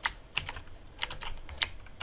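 Computer keyboard keystrokes: an irregular run of short clicks, some in quick pairs.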